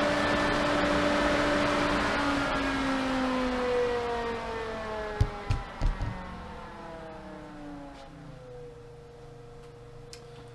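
1.5 horsepower variable-speed pool pump winding down from full speed: the motor's whine and the water rush through the pipes fall steadily in pitch and fade away. A couple of dull thumps come about halfway through.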